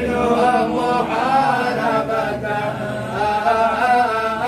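Group of men chanting a devotional mawlid recitation together, in long melodic phrases whose held notes rise and fall, with brief breaks between phrases.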